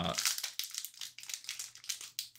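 Foil wrapper of a hockey-card pack crinkling as it is handled and pulled open, a rapid run of crackles.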